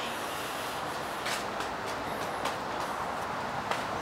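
Steady outdoor background hiss, with a few faint short ticks and a brief faint high chirp about two seconds in.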